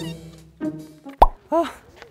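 Cartoon-style editing sound effects over background music that fades out: a sharp pop about a second in, then a short springy tone that swoops up and back down.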